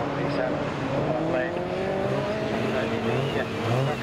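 Engines of several small autograss racing hatchbacks being driven hard as they pass on the dirt track, their pitch climbing gradually as they accelerate.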